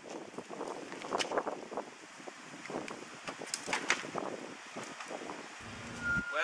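Wind buffeting the microphone outdoors, with scattered light clicks and knocks.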